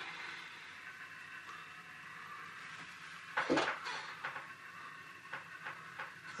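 OO gauge model diesel locomotive running slowly into the engine shed: a faint, steady mechanical whine. A short louder noise comes about three and a half seconds in, followed by a few light clicks.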